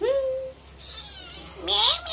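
A kitten meowing repeatedly: a short call right at the start, fainter calls in the middle, and a louder rising call near the end.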